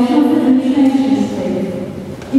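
A voice holding long pitched notes in a sung, chant-like line, easing off into a short pause near the end.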